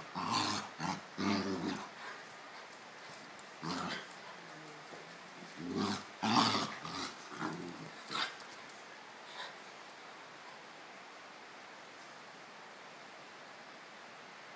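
Two dogs play-fighting, growling in a series of short bursts over the first nine seconds or so, then falling quiet.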